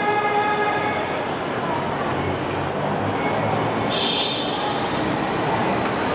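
Steady city street noise with an electric train's motor whine, a stack of tones that fades over the first second, and a faint high tone about four seconds in.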